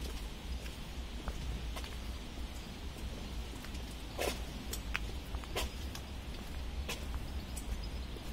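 Footsteps on a paved path, a few soft scuffs about a second and a half apart, over a low steady rumble of wind on the microphone.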